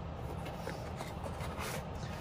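Faint scrape of a cardboard inner tray sliding out of its printed box sleeve, over a steady low background hum.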